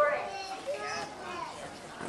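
Speech: a young child talking, with other children's voices around.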